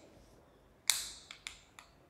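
A sharp click about a second in, dying away briefly, followed by three lighter clicks.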